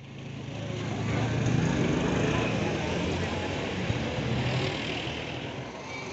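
A vehicle engine runs amid outdoor street noise, fading in over the first second.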